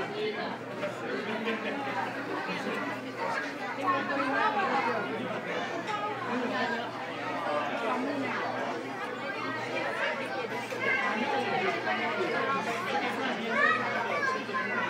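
Background chatter of many diners' voices in a restaurant dining room, over a low steady hum.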